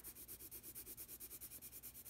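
General's Sketch and Wash water-soluble graphite pencil rubbing on sketchbook paper in quick back-and-forth hatching strokes, about ten a second, faint and even, shading in a dark area of a value sketch.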